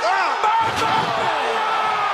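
A heavy crash of a wrestler's body landing after a dive from a ladder, with a sharp crack about half a second in followed by a deep thud. A man's shout is held over it.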